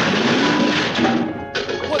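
A loud crash sound effect, a dense noisy clatter that cuts off about a second and a half in, with music underneath.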